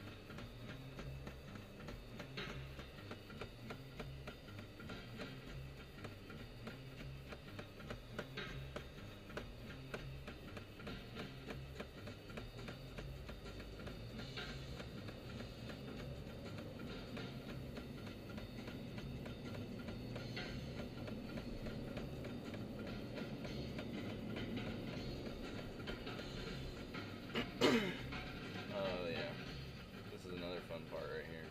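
Music playing from a car stereo inside the cabin of a slow-moving car, its bass line changing in steps, over low road and engine noise. A brief louder sound comes near the end.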